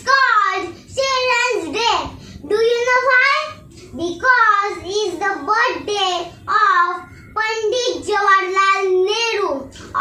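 A young girl reciting a Hindi poem about Chacha Nehru in a sing-song chant, in short melodic phrases with brief pauses between them.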